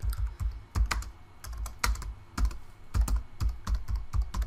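Typing on a computer keyboard: irregular keystroke clicks, several a second, with short pauses between bursts, as a word is typed out.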